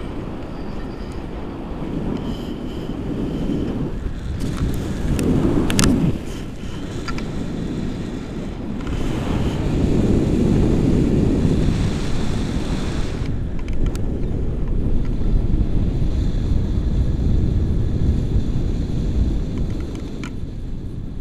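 Wind buffeting an action camera's microphone in paraglider flight, a steady low rumble that swells about five seconds in and again from about nine to thirteen seconds, with a few sharp clicks near six seconds.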